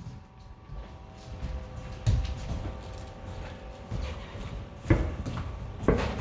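Boxers sparring in a ring: three dull thuds from gloves and feet spread across a few seconds, over faint background music.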